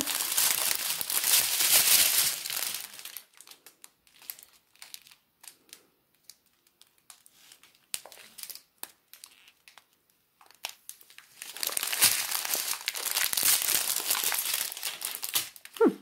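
Clear plastic bags of diamond-painting resin drills crinkling as they are handled. Two long stretches of crinkling, at the start and over the last few seconds, with a quieter spell of scattered small clicks and rustles between.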